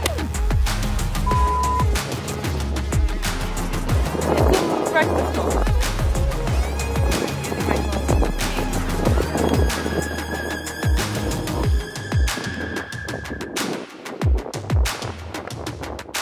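Background music with a steady beat and deep bass.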